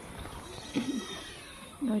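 A single short, voice-like call with a bending pitch about a second in, over a faint steady background. A woman starts speaking near the end.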